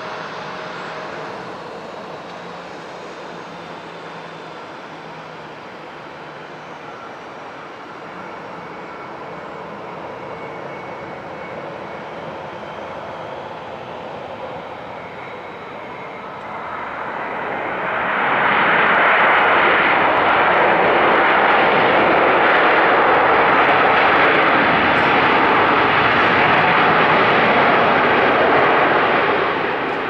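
Boeing 787-8's Rolls-Royce Trent 1000 engines on final approach, a steady moderate whine. About two-thirds through, just after touchdown, the engine noise rises sharply and stays loud: reverse thrust on the landing roll.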